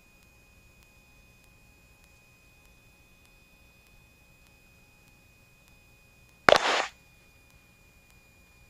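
Very quiet headset or intercom audio with a faint steady high tone. About six and a half seconds in comes a sharp click and a short burst of static, like an aircraft radio transmission keyed open and closed.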